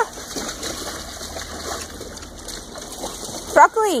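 Low, even background noise of an open yard, then near the end a woman calls out a dog's name once in a high voice that falls in pitch.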